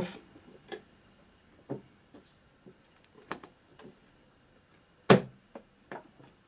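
Scattered light clicks and taps of hard plastic model-kit parts as the top section of an H0 Faller Plattenbau model is dry-fitted onto the floors below, with a louder sharp click about five seconds in.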